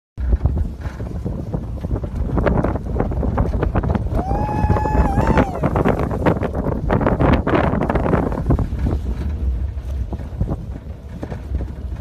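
Heavy wind buffeting the microphone over a vehicle's engine rumble, with rough knocks and rattles throughout. A single held high note, about a second long, stands out about four seconds in.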